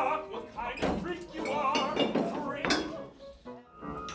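Opera cast in rehearsal, singing with a wavering vibrato and voices overlapping in a crowd scene, with a few knocks and clinks among them.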